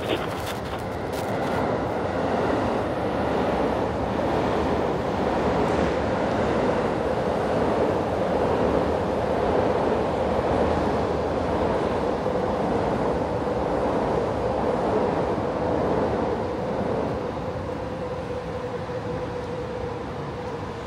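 Train passing: a long, steady rumble that builds over the first couple of seconds and eases off near the end, with a steady hum in its last few seconds. A few sharp clicks sound right at the start.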